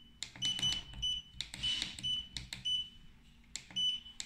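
Short high beeps from a smart circuit breaker's keypad as its menu buttons are pressed, several in a row at uneven spacing, each with a small button click.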